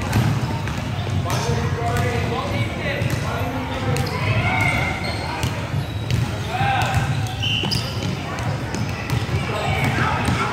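Several basketballs bouncing at an irregular pace on a hardwood gym floor, mixed with children's shouts and chatter, all ringing in a large gymnasium.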